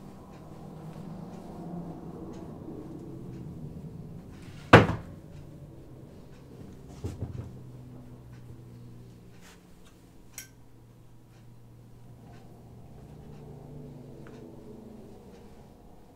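Pressing with a clothes iron at an ironing board: one loud, sharp thunk about five seconds in, a few softer knocks a couple of seconds later and a small click near ten seconds, over a low steady hum.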